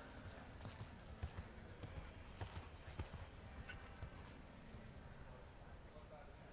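Faint hoofbeats of a horse landing over a fence and cantering on across soft arena footing: a run of irregular low thuds through the first four seconds.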